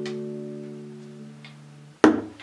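Acoustic guitar's last strummed chord ringing out and fading away, ending the song.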